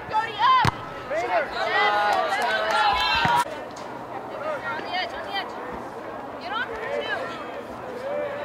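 High-pitched shouts and calls from several voices across a girls' soccer field, loudest over the first three and a half seconds and then quieter. A single sharp thud of a ball being kicked comes under a second in.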